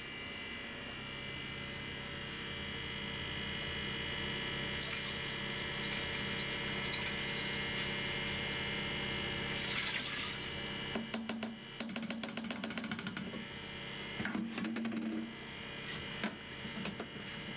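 Liquid poured from a red jug into a plastic canister, splashing for about five seconds, over a steady machinery hum with several fixed tones. Near the end come a few seconds of clattering as the jug and canister are handled.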